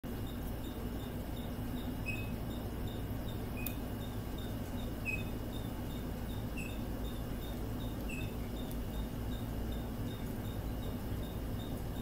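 Faint high chirps repeating about three times a second, with a louder, slightly lower chirp about every second and a half, over a steady low hum.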